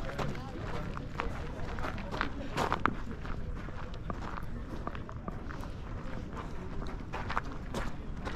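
Footsteps crunching on a gravel path while walking, irregular clicks over a steady low rumble, with indistinct voices of people around.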